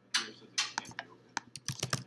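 Typing on a computer keyboard: a quick, irregular run of keystrokes that begins just after the start.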